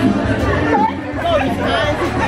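Close-up conversational speech from a few people, with background chatter.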